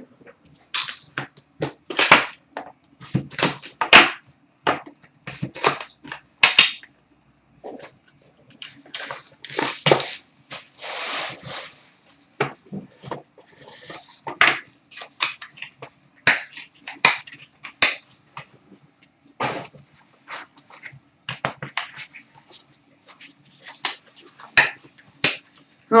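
Trading-card packs and cards being opened and handled: a run of short crinkles, clicks and taps, with a longer rustle about nine to twelve seconds in, over a faint steady hum.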